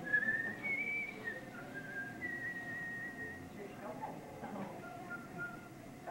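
Whistling: a thin tune of held high notes that step up and down in pitch, loudest in the first second or so.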